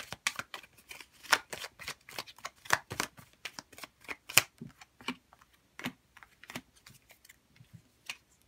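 A deck of large tarot-style cards being shuffled by hand: a rapid, irregular run of card snaps and slaps that thins out toward the end.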